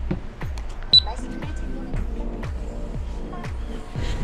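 Background music with a steady deep beat, about two beats a second, and a pitched melodic line over it.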